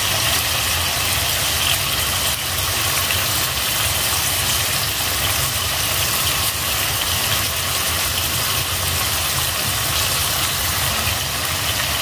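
A steady low hum with an even hiss above it, unbroken and with no single sound standing out.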